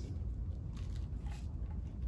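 Faint handling noise of a plastic cable connector and wires being fitted together by hand, with a few soft ticks over a low steady hum.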